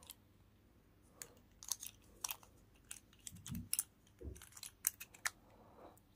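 Small plastic deer night light being handled: a string of light clicks and taps as its battery cap on the head is fitted and twisted, starting about a second in, with a couple of dull knocks midway.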